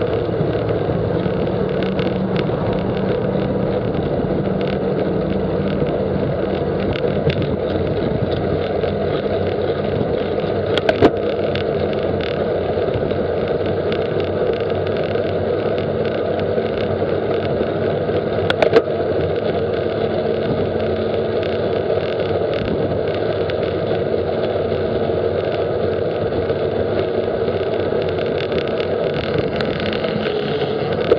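Steady rushing wind and road noise from a bicycle-mounted camera at road-bike speed, drafting close behind a towed trailer. Two sharp knocks sound about 11 seconds in and again near 19 seconds.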